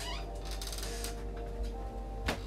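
Soft background music with long held tones. Over it comes a short high sound that falls in pitch at the start, then a brief rapid high flutter about half a second in.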